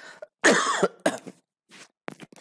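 A man's cough: one loud, short cough about half a second in, followed by a few fainter throaty sounds.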